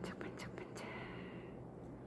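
A person whispering a few soft words in the first second and a half, over a steady low hum of room or ventilation noise.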